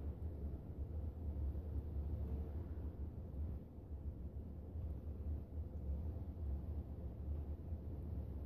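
A steady low background hum and room noise, with no distinct event over it.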